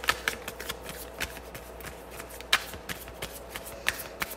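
Tarot cards being shuffled and handled by hand: a run of irregular soft flicks and slaps, with a few sharper snaps.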